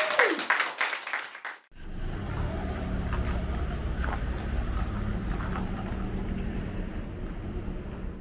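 A live band's last held note slides down and ends, with applause fading out over the first second or so. After a sudden cut, a steady low outdoor rumble with faint scattered clicks fills the rest.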